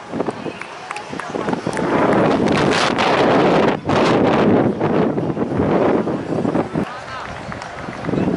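Indistinct nearby voices talking, mixed with wind noise on the microphone.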